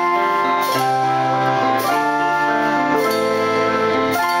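Rock band playing an instrumental intro live, amplified guitars holding sustained chords over drums, with a cymbal crash a little over once a second.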